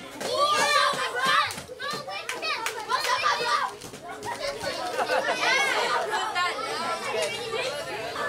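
Many children's voices chattering and calling out over one another, high-pitched and overlapping, in a large room.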